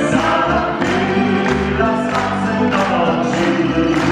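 Live folk-pop song: a male and a female singer singing together over a band of plucked mandolin-type strings, acoustic guitars and accordion, with a steady bass line.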